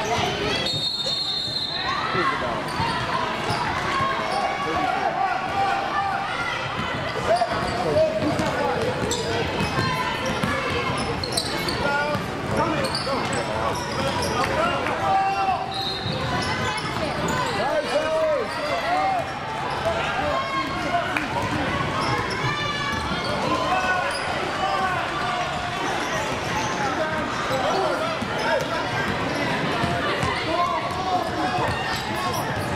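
Basketball being dribbled on a hardwood gym floor during a youth game, with steady overlapping voices of players, coaches and spectators. There is a brief high-pitched squeak about a second in.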